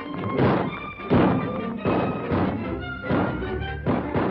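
Orchestral film score in old, narrow-band recording, with sustained notes under a regular heavy thud about every 0.7 seconds.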